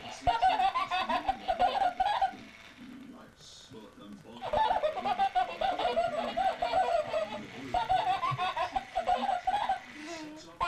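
High-pitched laughter in long runs of quick, rapid pulses, with a break of about two seconds after the first run.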